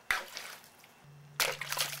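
Water splashing in a plastic bowl as a small orange object drops into it: a sharp splash just after the start, then a stronger, longer splash and slosh about a second and a half in.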